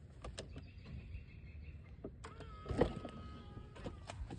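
Tesla door window motor whining as the frameless glass drops when the flush handle is pressed, in two stretches. A clunk about three seconds in as the latch releases and the door swings open.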